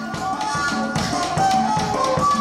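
A band playing: melody notes over fast drum and percussion strikes, growing louder over the first second and a half.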